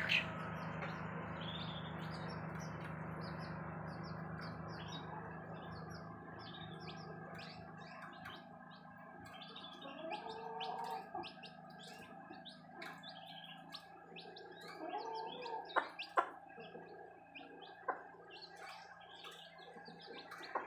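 Domestic chicks peeping in many short, high chirps while feeding, with a hen giving a lower call twice, about ten and fifteen seconds in. A low steady hum in the background fades out over the first half, and a few sharp taps come near the sixteen-second mark.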